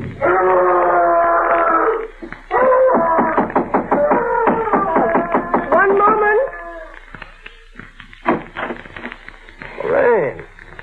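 A man screaming and wailing as performed in a radio drama: a long held scream, then about four seconds of broken, shifting cries, dying away after about seven seconds, with a sharp falling cry at the very end.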